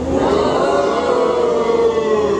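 A man's voice holding one long drawn-out note, like a sustained shout or sung call, that rises slightly and then sinks gently.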